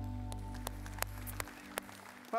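A live worship band's last chord held and fading out, its low bass note stopping about one and a half seconds in, with a few sharp clicks scattered through it.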